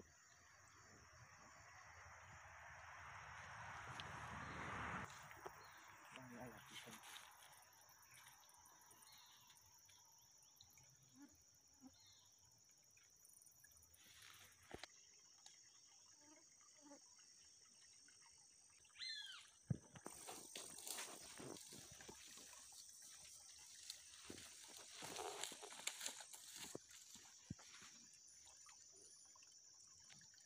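Near silence: faint outdoor ambience, with a rush of noise that swells over the first five seconds and scattered faint rustles and clicks in the second half.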